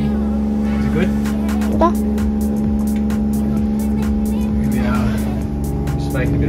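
Steady low drone of a boat's motor, with music playing over it.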